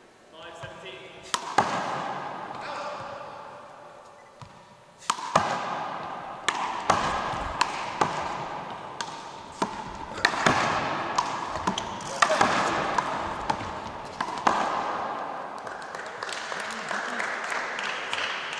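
One-wall handball rally: the small rubber ball smacks off players' hands, the wall and the hardwood floor in quick, irregular succession, each hit echoing through the gym. Two hits come early, then a run of a dozen or so during the point.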